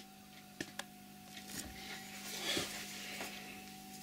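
Faint metallic clicks and a soft scraping as a lathe's screw-cutting tool is handled and set at the toolpost, over a steady low hum.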